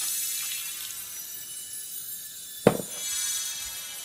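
Water pouring from a glass measuring cup into a crock pot of raw vegetables, a steady splashing trickle. A single sharp knock, the loudest sound, comes about two-thirds of the way through.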